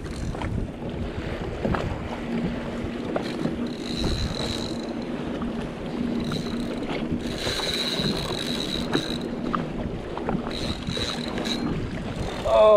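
Wind buffeting the microphone and choppy water against a Sea-Doo Fish Pro personal watercraft, with a faint steady hum underneath and a thin high whine that comes and goes several times.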